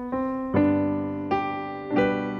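Yamaha digital piano played solo, opening a song's accompaniment with slow chords. Four chords or notes are struck, each left to ring and fade before the next.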